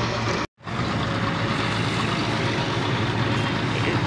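Steady low mechanical drone with an even rush of noise, like an engine running, broken by a brief complete dropout about half a second in.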